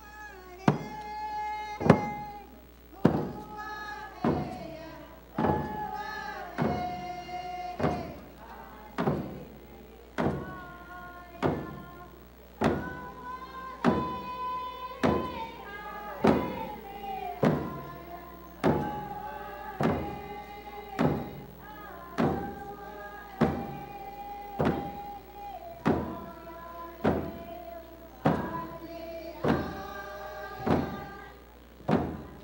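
A group singing a Tlingit dance song in unison over a slow, steady drumbeat, about one beat a second, the voices holding long notes between strikes.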